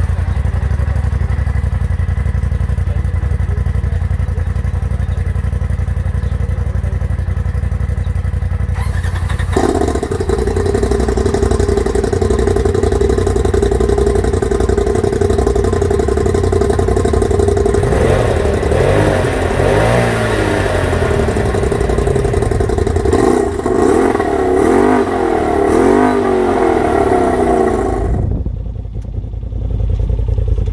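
2020 Polaris RZR XP4 Turbo's turbocharged twin-cylinder engine idling through a freshly fitted Gibson Performance dual exhaust, then revved up and down repeatedly in two spells in the second half. Just before the end the sound cuts to a duller, steadier engine note.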